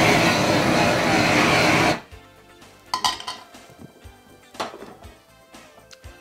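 Handheld gas blowtorch flame blasting loudly into a frying pan of onions for about two seconds, then cutting off suddenly. A few light clinks of utensils and dishes follow.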